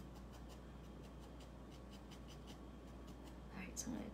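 A felting needle jabbing repeatedly into wool on a foam pad: faint, quick, scratchy pokes at an even pace.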